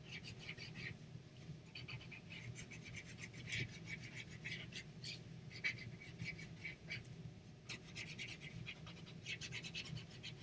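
Faint scratching of a white pencil on black paper in quick back-and-forth colouring strokes, coming in runs with short pauses as stripes are filled in.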